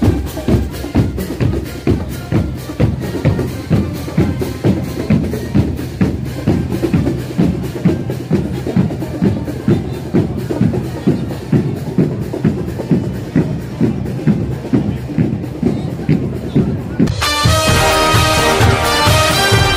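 Marching band drum line of bass drums, snare drums and cymbals playing a steady march beat. Near the end it cuts to end-screen music with held synthesized notes.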